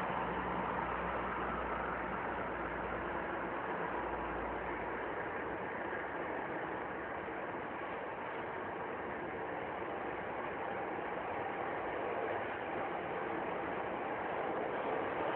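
Steady mechanical noise like an engine running, with an even hiss. A low rumble fades away about five seconds in.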